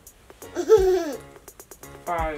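A single short wordless vocal sound, rising briefly and then falling in pitch, from a person with a mouth full of marshmallows, over background music.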